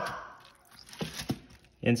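Fingers working inside an opened quail carcass, pulling at the organs: a few short, wet clicks and crackles bunched about a second in.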